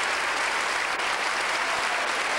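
Audience applauding steadily, many hands clapping at once in a dense, unbroken ovation.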